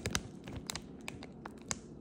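A clear plastic bag crinkling as it is handled, with a few scattered sharp crackles and clicks, one louder crackle near the end.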